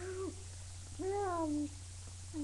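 A girl's voice making a drawn-out hummed, whiny note that falls slightly in pitch and then holds, after a brief note at the very start.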